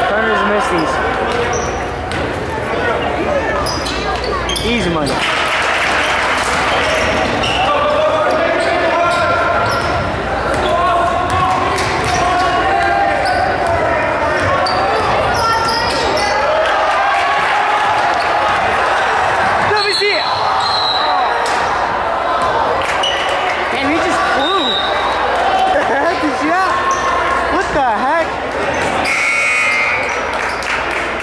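Gymnasium game sound: indistinct spectator and bench chatter over a basketball bouncing on a hardwood court, with knocks and short squeaks from play on the floor.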